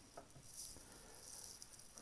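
Faint high hiss with scattered light crackles and ticks, no clear single event.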